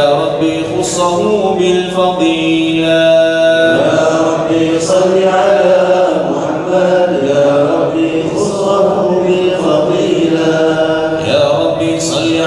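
Arabic devotional chanting of salawat in praise of the Prophet Muhammad, sung in long drawn-out notes that slide between pitches with no spoken words.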